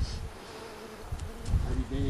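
A flying insect buzzing near the microphone, heard as a faint steady hum over low outdoor rumble.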